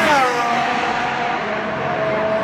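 Formula 1 car's turbocharged V6 passing at speed. The engine note drops sharply in pitch as it goes by, then holds a steady high whine as it pulls away.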